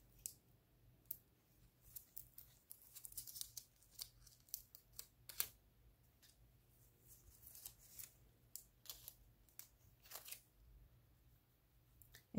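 Faint, scattered crackles and sharp ticks of a sheet of plaid nail transfer foil being peeled off glued areas of a rock and worked with a silicone-tipped tool, thickest in two spells a few seconds apart.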